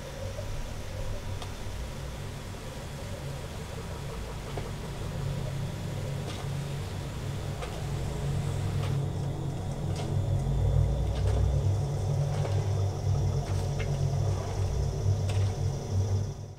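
Film soundtrack of a quiet jungle scene played over home theatre speakers: a steady low rumble with a faint layer of insect and jungle ambience and a few light clicks. The rumble swells about ten seconds in.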